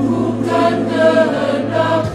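Voices singing a Christian song together over instrumental accompaniment, with a held low bass note that drops out near the end.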